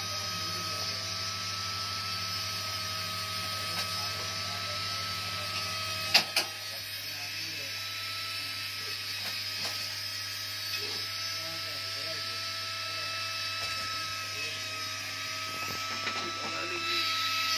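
Small electric motors of jewellery-making tools running with a steady high whine. Two sharp clicks come about six seconds in, and a low hum stops with them.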